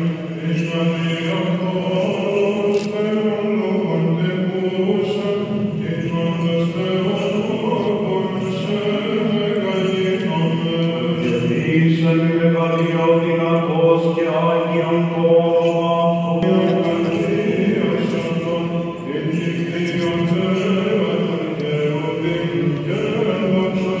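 Greek Orthodox Byzantine chant: a sung melody line moving over a steady low held drone note (the ison), continuing without a break.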